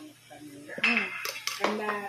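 Cutlery clinking and clattering against plates and dishes, starting just under a second in, with a few sharp clinks.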